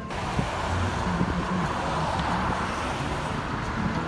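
Steady road noise of a car driving, heard from inside the cabin: an even rushing sound with a low rumble underneath.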